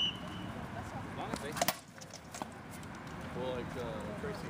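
Sparring blows from SCA rattan swords landing on shields and armour: a short ringing ping at the very start, then a quick cluster of sharp cracks about a second and a half in and a single knock shortly after, with voices talking near the end.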